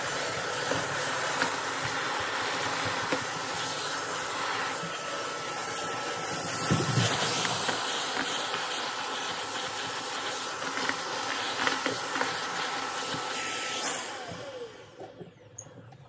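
Shark DuoClean vacuum running steadily through its crevice tool, with small bits of sequins and confetti clicking and rattling up the wand and one louder knock partway through. Near the end it is switched off, and the motor's whine falls in pitch as it spins down.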